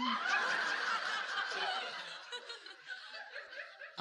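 Audience laughing, the laughter dying away over about three seconds.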